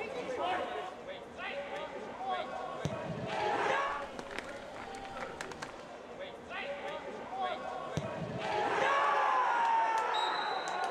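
Footballers shouting to one another across the pitch in an empty stadium, with a few sharp ball kicks, one about three seconds in and another near eight seconds.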